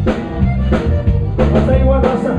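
Live Tejano band playing: button accordion over electric bass and drum kit, with a sharp drum hit about every two-thirds of a second.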